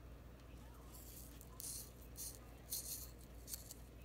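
Faint crinkling of thin plastic wrapping as small craft items are handled and unwrapped, in several short rustles over a low steady hum.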